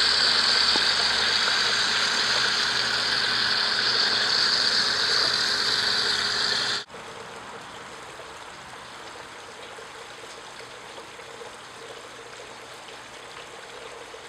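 Water splashing and spilling through a copper-pipe fountain sculpture with water wheels, loud and steady, then much quieter after a sudden drop about seven seconds in, with a faint steady hum under it.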